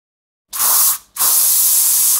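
Two hissing blasts of air from an airbrush: a short burst, then after a brief gap a longer one.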